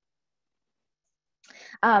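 Silence for over a second, then a short intake of breath and a woman's hesitant "Um" near the end.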